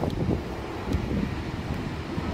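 Steady low rushing noise of the Lower Düden Waterfall plunging off the cliff into the sea, mixed with wind buffeting the microphone.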